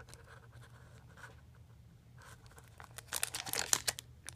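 Hands handling paper and plastic packaging: faint scratching at first, then a quick flurry of rustling and crinkling about three seconds in.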